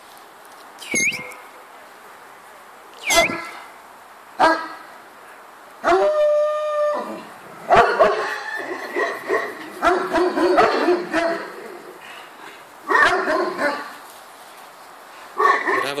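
Large dogs barking and whining: a few short yelps in the first five seconds, a held whine about six seconds in, then a busy run of barks through the middle, with two more bursts near the end.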